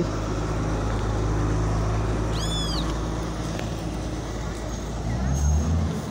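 Town street traffic: car engines running and passing, with one engine note climbing as a car pulls away near the end. About two and a half seconds in there is one short high-pitched sound that rises and falls.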